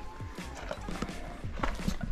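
Footsteps on a dry dirt path, a few irregular steps, with quiet background music underneath.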